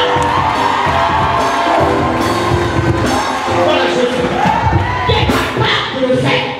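Live praise and worship music in a church, with the congregation cheering and shouting over it.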